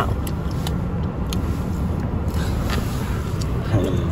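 Car interior noise: a steady low rumble of engine and road noise heard from inside the cabin.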